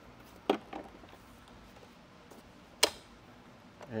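Folding steering column of a WHILL Ri mobility scooter being lowered: a short click about half a second in, then a sharper, louder click near three seconds as the column latches in its folded-down position.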